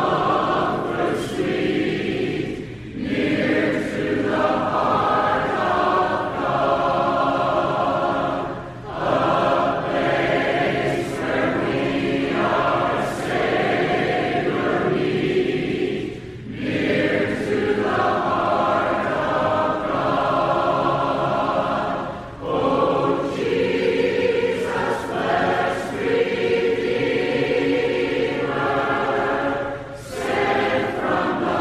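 A choir singing a religious song, in long sustained phrases broken by brief pauses every six seconds or so.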